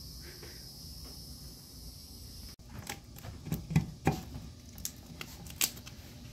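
Handling of a power cord and plug being pushed into a wall outlet: a few short clicks and knocks in the second half, with a faint steady high hiss that cuts off suddenly a couple of seconds in.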